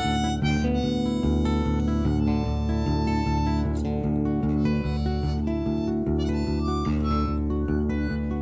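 Harmonica solo played over a strummed acoustic guitar, an instrumental break between sung verses of a folk song.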